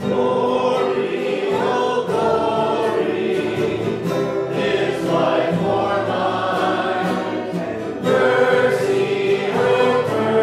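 Group of voices singing a hymn to strummed acoustic guitar.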